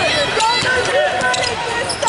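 Basketball bouncing on a hardwood court as a player dribbles, with voices calling out and short squeaks over a big-hall echo.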